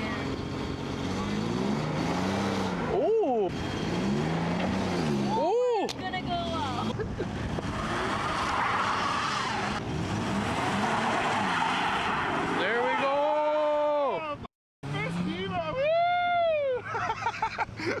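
Car engines revving up and down over and over, with tires spinning on ice and snow: a small Ford Festiva straining to tow a stuck SUV free.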